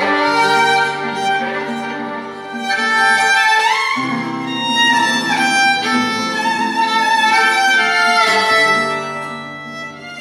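Acoustic violin playing a bowed melody of held notes, with a rising slide between notes about three and a half seconds in, accompanied by a nylon-string classical guitar.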